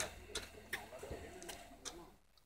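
Faint, distant voices with a few sharp clicks scattered through it.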